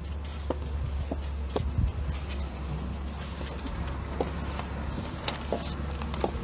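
Steady low background rumble with scattered small clicks and knocks, typical of a phone being handled or bumped while it records.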